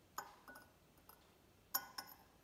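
Metal teaspoon clinking against the inside of a drinking glass while stirring sugar into water. About five separate light clinks, each with a short ring, the loudest near the end.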